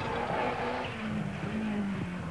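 Rally car engine running at a steady pitch, the note easing down near the end.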